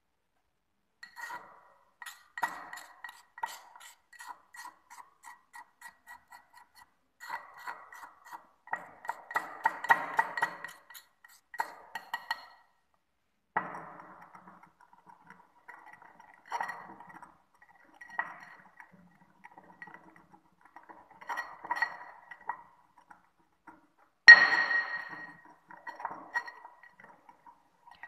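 Ceramic pestle grinding and clinking in a ceramic mortar as dry toothpaste powders are triturated to reduce their size and mix them evenly. It comes as irregular runs of short scrapes and clinks, with one louder clink near the end.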